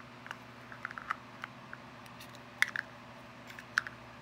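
Light, irregular clicks and taps of small clear hard-plastic doll beds from a toy playset being handled and turned in the hands, with a couple of sharper clicks about two and a half seconds in and near the end.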